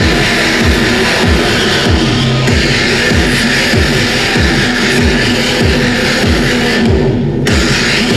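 Loud live industrial electronic music: a fast, pounding electronic kick beat, each hit sweeping down in pitch, under a dense wall of distorted noise. The noise briefly drops out near the end while the beat carries on.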